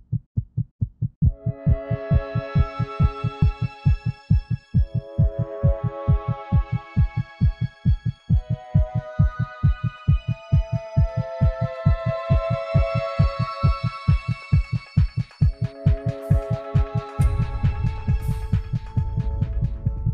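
A steady heartbeat sound effect, a regular low double thump, under slow music of sustained chords that comes in about a second in. A deep rumble joins near the end.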